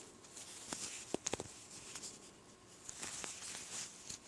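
Faint clicks and light scratching of a metal crochet hook working cotton yarn into single crochet stitches, with a few sharp ticks about a second in and softer ticks later.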